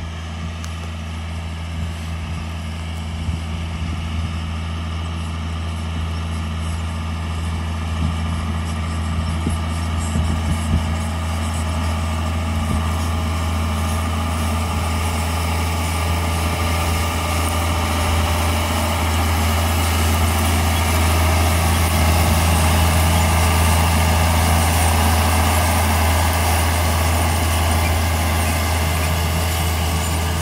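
John Deere 4955 tractor's six-cylinder diesel engine running steadily under load while pulling a 30 ft air drill. The engine grows steadily louder as the rig comes close.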